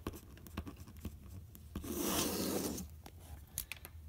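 A pen drawing a line across paper: one scratchy stroke about a second long near the middle, with a few small clicks around it.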